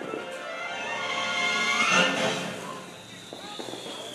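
Hand-held sparkler fizzing and crackling, heard under background music and voices, with the music swelling about two seconds in.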